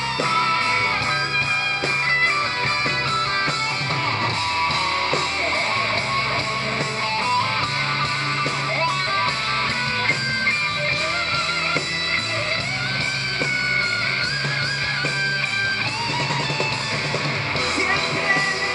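Live rock band playing an instrumental passage: an electric guitar plays a lead line of wavering, bent notes over drums and a steady low bass.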